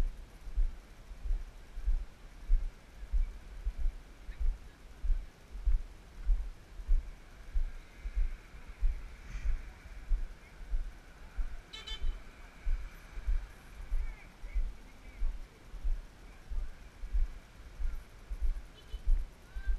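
Footsteps of a walker wearing a GoPro, jolting the camera in a steady rhythm of low thumps, a little under two a second. Over them, faint distant horn-like tones sound in the middle, and one short sharp sound comes about twelve seconds in.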